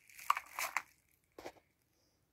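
Bubble wrap crinkling as model locomotives are handled on it, followed by a single short click about one and a half seconds in.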